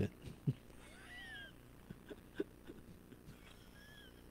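A faint animal call: one short cry that rises and falls about a second in, and a brief chirp near the end, among a few light knocks.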